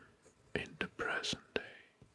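A person whispering softly, close to the microphone, with a few small clicks in among the words.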